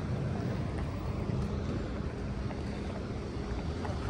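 Wind buffeting the microphone over a steady low rumble of street traffic, with a faint steady hum.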